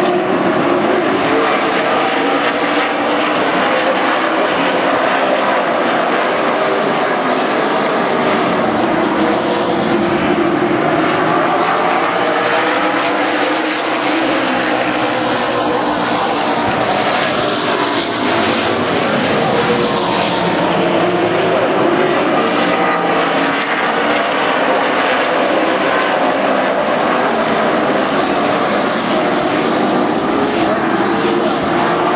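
A field of Outlaw Super Late Model stock cars racing on a paved oval: a loud, steady, layered drone of many V8 engines with pitches rising and falling as cars pass. It swells brighter through the middle as the pack comes by close.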